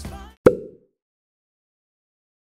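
A pop song fades out, then a single short pop about half a second in rings briefly and stops, leaving dead silence.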